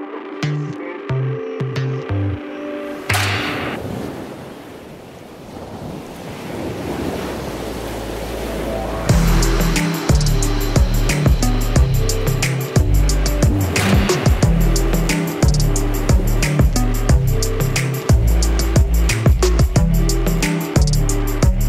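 Electronic dance music track: the beat breaks off about three seconds in, leaving a rushing wash of noise that swells louder, and the full beat with heavy bass drops back in about nine seconds in.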